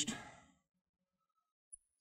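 Near silence: a man's spoken word trails off in the first half second, then quiet room tone with one faint tick near the end.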